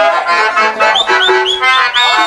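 Live Indian drama-stage accompaniment led by a harmonium, sustained reedy chords with a melody over them. In the second half a run of about five short ornamented high notes follows one another.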